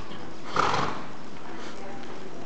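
Paint horse jogging under saddle on soft arena dirt, its hoofbeats muted, with one short rush of breathy noise about half a second in.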